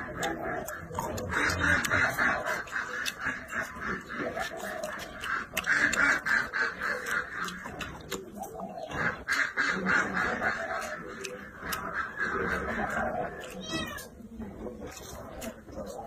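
Close-miked chewing of crisp vegetables: repeated crunches and wet mouth sounds as bites of pepper, broccoli and lettuce stem are eaten.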